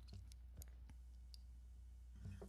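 Near silence: room tone with a low steady hum and a few faint, scattered clicks.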